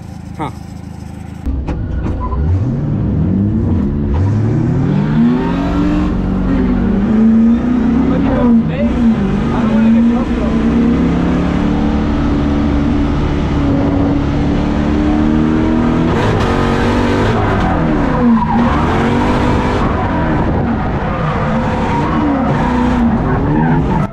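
LS V8 engine of a BMW E30 drift car, heard from inside the car on a drift run. It revs up sharply about a second and a half in, then stays at high revs, its pitch dipping and rising again and again as the throttle is worked.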